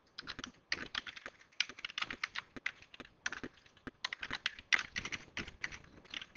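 Typing on a computer keyboard, the keys clicking in quick, irregular runs with short pauses between them.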